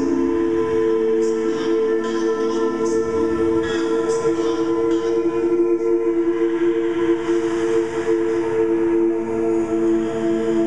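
Layered, live-looped a cappella voices holding a steady sustained chord, with a few short sharp mouth sounds over it in the first half.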